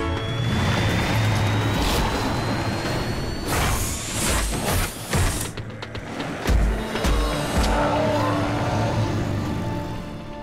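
Cartoon action soundtrack: dramatic music mixed with vehicle engine effects. A rising whine runs through the first few seconds, and three heavy thuds come about six and a half seconds in.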